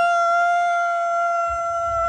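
A person on a water slide giving one long, high-pitched yell held on a single steady pitch.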